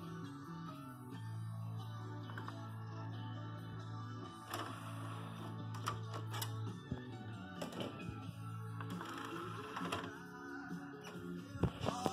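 Music playing from a JVC UX-A3 micro component system, set to FM while its retrofitted auxiliary input also plays, so the FM radio and the auxiliary audio come out mixed together. A few light clicks sound over it.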